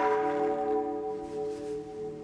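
A bell, struck just before, ringing on with several steady tones that slowly fade, opening the music soundtrack.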